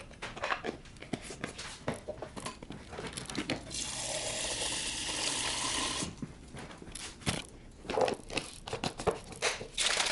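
Clicks and knocks from a plastic shaker cup and powder tub being handled, then water running from a refrigerator door dispenser into the cup for about two seconds, followed by more sharp clicks and knocks.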